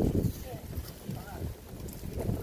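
Wind buffeting the microphone, loudest at the very start, with a few brief snatches of voices.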